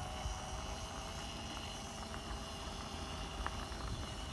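DTM electric scooter riding over block paving: a steady low rumble and vibration from the wheels on the pavers.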